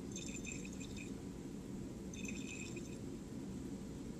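Solution being swirled in a glass Erlenmeyer flask, heard as two faint short patches of high sloshing over a steady low room hum.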